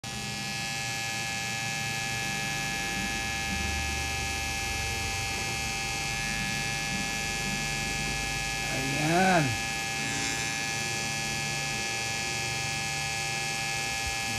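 Pen-style rotary tattoo machine running with a steady electric buzzing hum as the needle works ink into skin. About nine seconds in, a person's voice briefly rises and falls in pitch over it.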